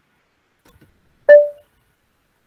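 A single short electronic beep that starts abruptly and fades out quickly, with near silence around it.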